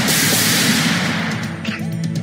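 A sudden loud blast of gunfire from the hunters' rifles and shotguns, fading over about a second and a half, over dramatic background music.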